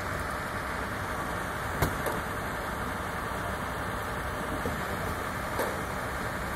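Vehicle engines idling with a steady low rumble, a sharp knock about two seconds in and a softer one near the end.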